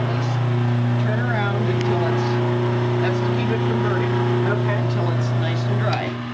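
Motor of a wild rice parcher running, driving the slow-turning stirring paddles, with a steady low hum.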